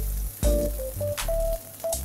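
Background music with a steady bass and held notes, over salmon fillets sizzling in a very hot frying pan.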